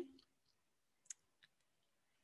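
Near silence over a video-call line, broken by two faint, short clicks, the first about a second in and a softer one just after.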